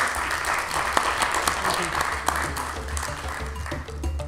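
Audience applauding, a dense patter of clapping, with background music running underneath. The applause dies away near the end and the music, with sharp percussive hits, takes over.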